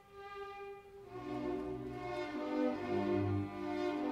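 Chamber orchestra playing a late-18th-century Classical symphony, led by violins: a soft held note, then fuller string chords with bass coming in about a second in.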